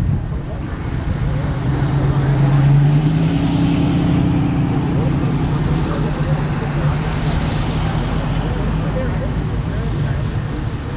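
A motor vehicle's engine hum over steady outdoor traffic and wind noise, loudest about three seconds in and then holding steady.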